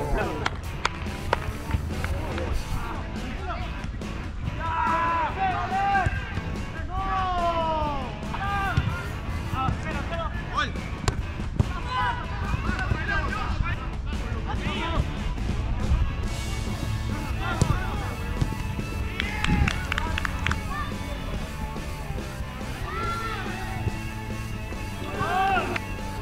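Players calling and shouting across a five-a-side football pitch, their voices coming in short scattered calls over steady background music, with a few sharp knocks of the ball being kicked.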